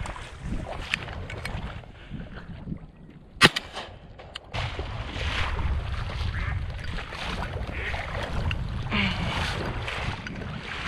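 A single shotgun shot about three and a half seconds in, fired to finish a crippled duck on the water. It is followed by steady wind and water noise.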